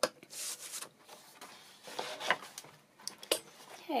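Sheets of paper and cardstock being handled and slid across a scoring board. There is a sharp tap at the start, short rustling slides, and a few light taps a little after three seconds.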